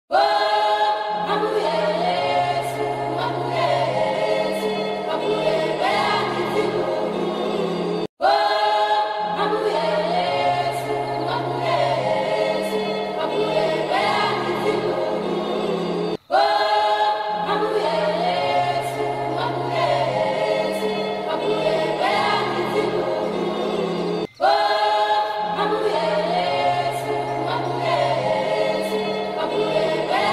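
Outro music: a choir singing over a bass line, one short phrase looping about every eight seconds with a brief break between repeats.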